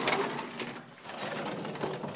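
A bird cooing, over the rustle of the phone being carried and handled.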